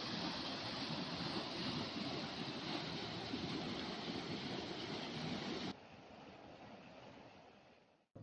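Muddy floodwater rushing over a concrete overflow causeway, a steady churning rush that drops to a fainter rush about six seconds in.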